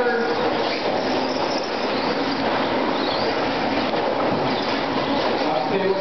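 Electric 2WD RC trucks running on an indoor dirt track: a steady wash of motor and gear whine, with faint whines rising and falling as the trucks speed up and slow down.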